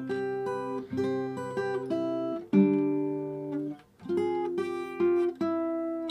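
Steel-string acoustic guitar with a capo playing a song's outro riff: a run of plucked single notes and chords that ring on, with a strong new attack about two and a half seconds in and a brief gap just before the four-second mark.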